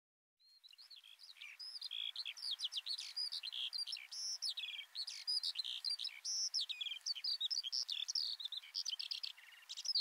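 Songbirds singing and chirping, a dense run of quick, varied whistled notes that fades in about half a second in over a soft steady outdoor background.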